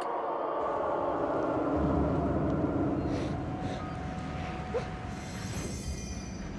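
Sound-design underscore: a rumbling drone that swells in and deepens about two seconds in, with a faint steady tone held through the second half.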